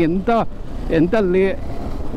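A man talking over the steady low rumble of a KTM 390 Adventure's single-cylinder engine and wind noise while riding.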